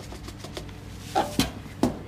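A launderette washing machine being handled while it is loaded with washing powder: three sharp clicks and knocks in the second half, over a steady low hum.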